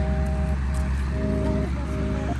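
Background music of held notes that change every half second or so, over a steady low rumble.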